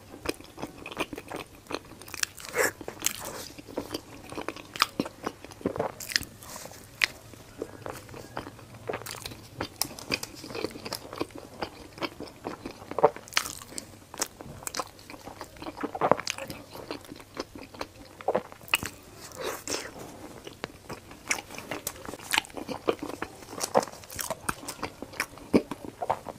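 Close-miked chewing of a chewy, cocoa-dusted mochi-like pastry with a thick chocolate filling: wet mouth sounds with many small, irregular clicks and crackles.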